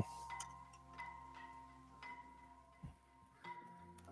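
Faint background music of sustained, bell-like tones, with a few faint clicks from a screwdriver turning out a screw in a plastic electrical box.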